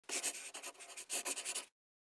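Intro sound effect made of quick, scratchy strokes in two clusters, cutting off suddenly shortly before the logo settles.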